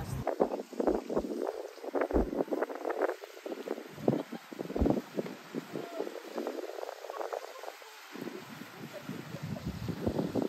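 Wind gusting over the microphone in short low rumbles, with an indistinct murmur of voices under it.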